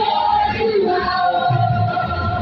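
A women's church choir singing together through microphones, holding long sustained notes.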